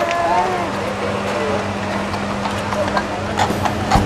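A horse's hooves clopping on pavement, with a few sharp clops in the last second or so. Underneath are people's voices and a steady low hum.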